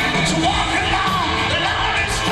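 Live hard-rock band playing loudly while the lead singer belts high, sliding notes into the microphone over electric guitar.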